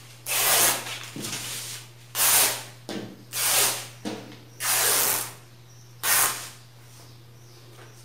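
Thin crepe fabric torn by hand along its straight grain, ripping in five short pulls about a second or so apart.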